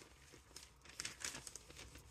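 Faint rustling of a large protective paper sheet being laid over sublimation transfers on a heat press, starting about a second in.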